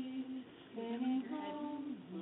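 A woman's unaccompanied voice sings the ballad's melody without words. A held note ends about half a second in, and after a short breath a new phrase starts.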